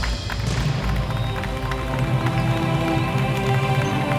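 Background score music: held notes over a low pulsing bass.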